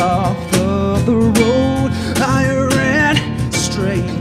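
Strummed acoustic guitar accompanying a male lead singer in a live acoustic rock performance; the sung notes are held and bend in pitch between phrases.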